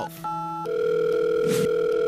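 Phone call being placed on a smartphone: a short keypad tone, then, from just over half a second in, the steady ringback tone of the number ringing at the other end.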